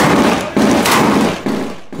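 Light machine gun firing from inside a room: a sharp shot right at the start, then loud echoing gunfire that dies away about a second and a half in.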